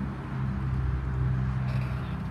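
2009 Honda CBR RR sport bike's inline-four engine idling steadily, with an even, rapid low pulse.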